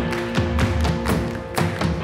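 Live rock band playing the opening of a song: sustained keyboard chords over a steady beat of percussive hits, about four a second.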